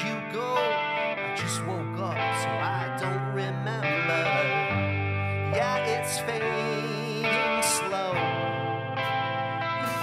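A rock band playing live: electric guitar, drums with cymbal crashes and a Roland Fantom keyboard, with a male lead voice singing over them.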